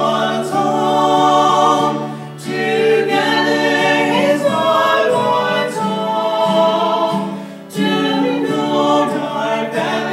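Three voices, two women and a man, singing a gospel hymn in close harmony to a strummed acoustic guitar. The long held notes break briefly between phrases about two seconds in and again near eight seconds.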